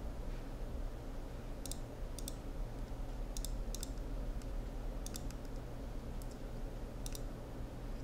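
Faint, sharp clicks, about a dozen and several in close pairs, starting about a second and a half in, over a steady low hum and background hiss.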